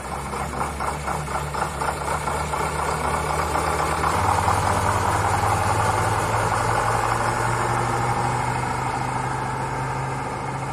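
Krupp Büffel vintage truck's diesel engine pulling away and driving past close by. About four seconds in the engine note rises and gets louder as it accelerates, then eases as the truck moves off.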